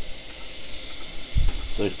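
Small electric motor-generator rig running with a steady hiss, and a low thump about one and a half seconds in.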